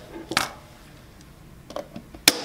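A sharp plastic click about half a second in, then a couple of faint ticks near the end, as a molded-case circuit breaker is handled and a pen tip is set onto its push-to-trip button to trip it.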